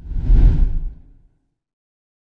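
Whoosh transition sound effect: one rush of noise, heaviest in the bass, that swells and fades within about a second.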